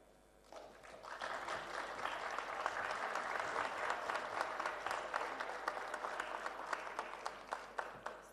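Audience applauding, a dense spread of many hand claps. It starts about half a second in, holds steady and dies away near the end.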